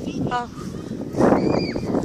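A boy's voice: a short 'uh', then a louder drawn-out vocal sound from a little past a second in until just before the end, over low rumbling noise on the tablet's microphone.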